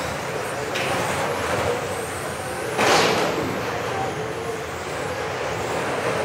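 Radio-controlled touring cars racing on a carpet track in a sports hall: a steady noise of motors and tyres with a faint high whine rising in pitch before the middle and a short, sudden louder burst about three seconds in.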